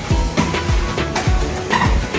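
Background music with a beat of deep bass notes that slide down in pitch, a few each second.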